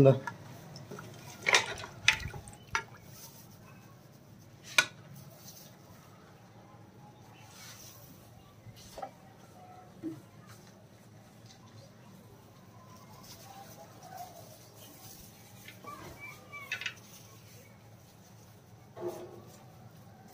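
A steel ladle clinking a few times against an aluminium pressure cooker in the first five seconds, then a few fainter knocks against a low background.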